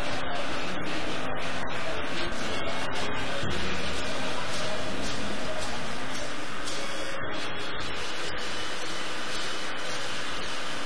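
Experimental krautrock band playing a dense, noisy passage: electric guitar through effects and analogue synth noise, forming a steady, hiss-like wash without a clear tune.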